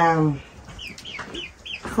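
A man's voice trails off on a long, falling syllable, then a chicken gives about five short, faint, high calls in quick succession.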